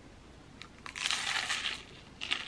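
A bite into a baked sfogliatella: its shatteringly thin, crisp layered pastry crunches for nearly a second, starting about a second in after a few small crackles.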